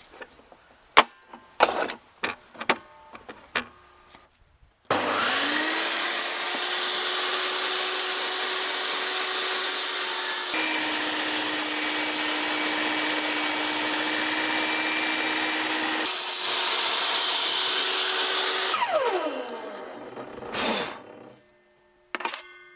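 A few knocks and clicks of wood being handled on the saw table. Then a VEVOR 1800 W benchtop table saw starts up suddenly and runs steadily, its motor dropping a little in pitch while the blade cuts through a small piece of log and rising again when the cut is clear. Near the end the saw is switched off and winds down, its pitch falling.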